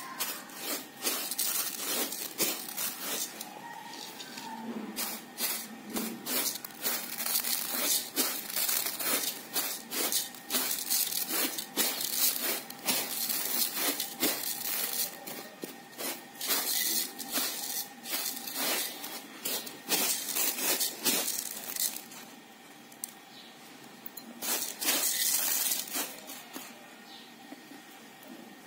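Dry uncooked basmati rice grains rustling and pattering as a hand sweeps and pushes them across a tray while picking them over for stones. The rustling runs in uneven bursts, dies down about three-quarters of the way through, then comes back briefly near the end.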